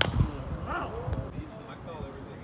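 A pitched baseball popping into the catcher's glove: one sharp crack right at the start, followed by a short low thud.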